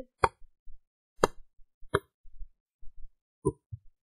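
A handful of short, sharp computer mouse clicks, about five spread unevenly across the few seconds, with near silence between them.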